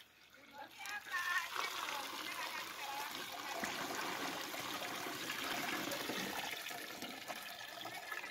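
Liquid traditional sorghum beer being poured from a plastic bucket into a hessian straining sack and trickling through into a metal pot. It starts about a second in and runs on as a steady pouring and trickling.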